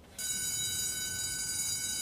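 School bell ringing, a steady high ring that starts just after the beginning: the signal for class to start.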